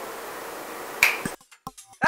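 A single sharp finger snap about a second in, after which the background hiss cuts out abruptly to near silence.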